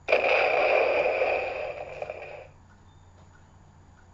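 Electronic Hulk roar sound effect played by a Titan Hero Power FX pack. It starts suddenly, lasts about two and a half seconds and fades out.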